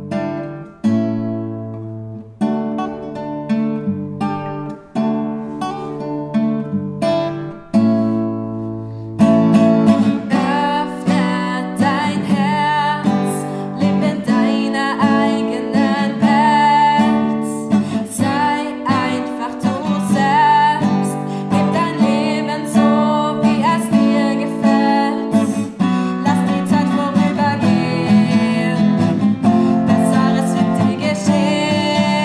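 Nylon-string classical guitar playing a song, with chords picked in a steady rhythm. A young woman's voice joins in singing about nine seconds in.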